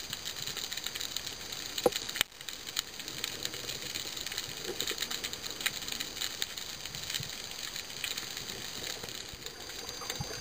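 Underwater reef ambience: a steady crackle of many tiny clicks, the sound of snapping shrimp among the rocks, with a sharper click about two seconds in.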